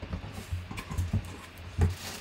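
Cardboard box flaps being pulled open and handled: a series of dull knocks and scuffs of corrugated cardboard, the loudest near the end.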